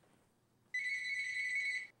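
Telephone ringing: a single electronic ring, a high trilling tone lasting about a second that starts just under a second in.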